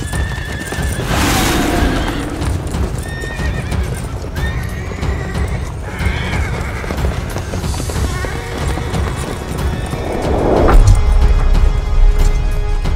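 Horses neighing and hooves clattering under background music, with a deep low rumble coming in near the end.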